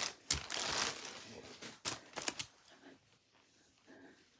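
Clear plastic garment bag crinkling as it is handled, a few sharp rustles in the first two and a half seconds, then it stops.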